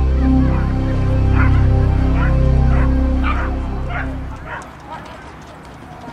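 A dog barking repeatedly, about twice a second, over music that fades out about four seconds in.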